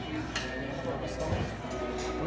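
Restaurant background: music playing over indistinct chatter, with a sharp click about half a second in.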